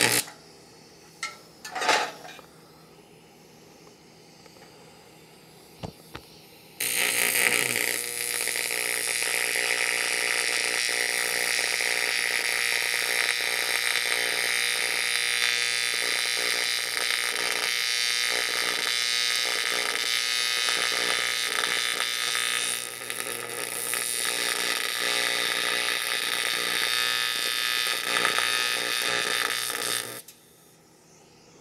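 TIG welding arc running steadily on the steel mast frame, a continuous hiss with a buzz under it, starting about seven seconds in and dipping briefly about 23 seconds in. A couple of short knocks come before the arc starts.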